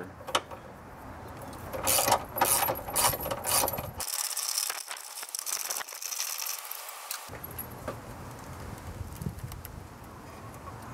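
Socket ratchet wrench clicking in runs as it is worked back and forth, backing out a bolt on the bar across the front of the engine bay.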